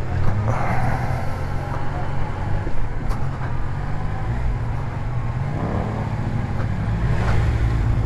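Large motorcycle engine running at low road speed, its revs rising briefly about six seconds in as the bike picks up speed, with wind noise on the microphone.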